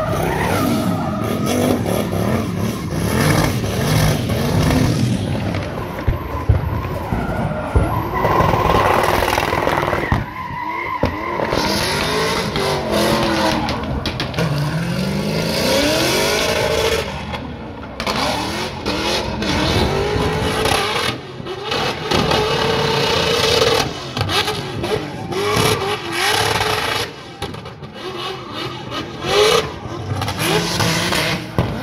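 Drift cars sliding at high rpm, engines revving up and down with tyres squealing and skidding. The sound changes abruptly a few times as one run cuts to another.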